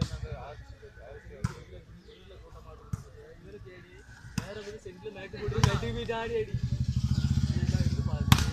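Volleyball being hit in a rally on an outdoor court: about five sharp smacks, roughly a second and a half apart, over the voices of players and onlookers. An engine runs in the background over the last second or two.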